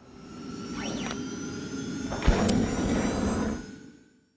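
Logo-sting whoosh sound effect: a rushing noise swells up with a sweeping glide about a second in, a sharp hit a little past two seconds, then fades out just before the end.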